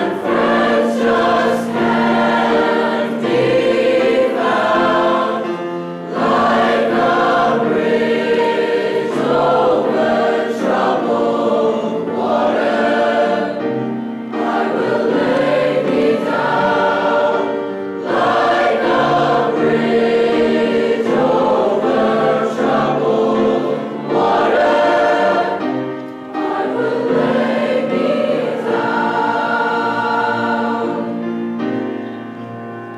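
Large school choir singing with grand piano accompaniment, in sustained phrases broken by short breaths every few seconds.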